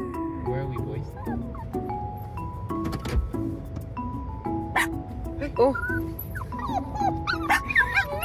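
Small dogs, a Maltese and a Maltipom, whining and yipping eagerly in wavering, rising-and-falling cries, mostly in the second half. Light background music of short repeating notes plays underneath.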